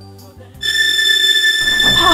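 Music fades out, then a steady high-pitched whine starts suddenly about half a second in and holds without change.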